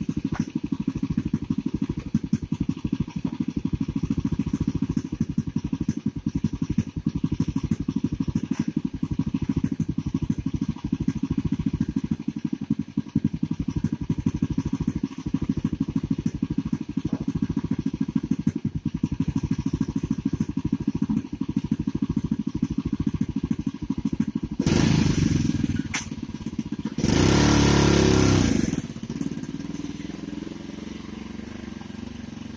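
Small motorcycle-type engine of a motorized cargo cart running at idle with a fast, steady putter. Near the end it gets much louder in two bursts of a second or two each as the cart pulls away.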